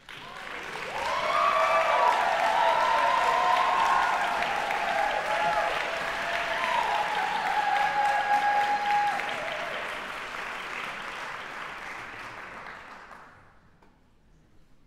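Audience applauding, with voices calling out over the clapping. The applause swells over the first second or so, holds, then dies away near the end.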